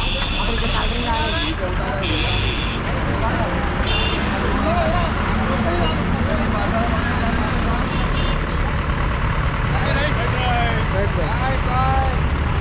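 Vehicle engine and road noise running steadily on the move, with men's voices calling over it. A high steady tone sounds for the first few seconds, with a short break in it.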